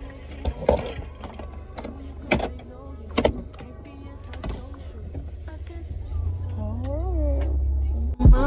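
Low steady rumble of a car heard from inside the cabin, growing a little louder toward the end, with a few sharp knocks and taps in the first three seconds. A song with singing comes in near the end.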